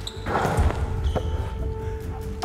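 A thrown volleyball strikes the wall of photo targets, with a noisy hit soon after the start and a sharp single bounce a little past a second in. Steady background music runs underneath.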